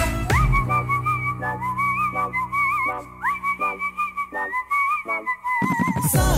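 A whistled melody with a wavering vibrato and small pitch slides, over a held low bass note and sparse plucked notes, in the instrumental passage of a Tamil film song. The whistling breaks off shortly before the end.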